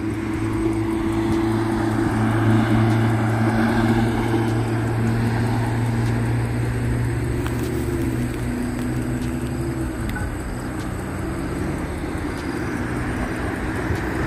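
A steady engine drone, a low hum with a noisy rush over it, swelling a couple of seconds in and then slowly easing off.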